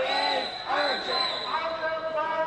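Protesters' raised voices shouting, several overlapping and not clearly worded, with a steady high-pitched tone running underneath.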